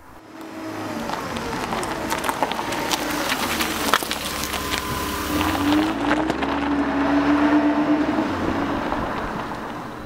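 A car engine running, fading in over the first second and easing off slightly near the end, with scattered clicks over it.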